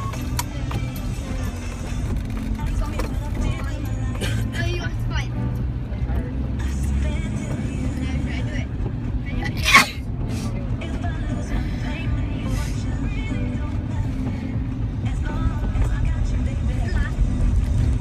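Steady engine and road rumble inside a moving car, with music and voices from the car radio playing over it. A brief, sharp high-pitched sound just under ten seconds in is the loudest moment.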